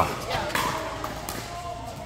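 Pickleball paddles striking plastic balls: several sharp pops at irregular intervals as rallies go on across the courts.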